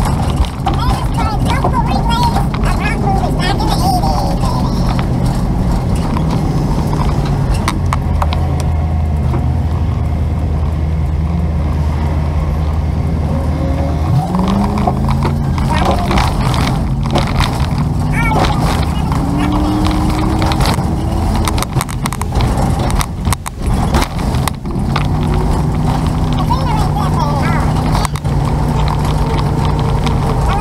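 A vehicle's engine running under way, with road and wind noise. Its low note holds steady for several seconds, then rises sharply about 14 seconds in as the vehicle speeds up, and rises again a few seconds later.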